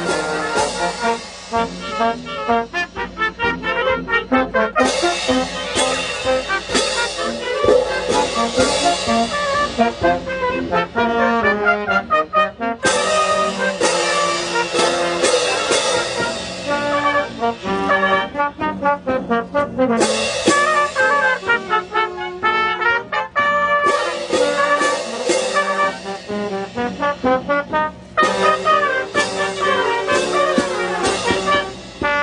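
Wind band playing outdoors: brass and clarinets over a steady bass drum beat. Louder, brighter full-band passages come back every few seconds.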